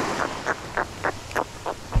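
A small jack being unhooked in the hand: a string of about eight short, irregular clicks over the soft wash of small surf.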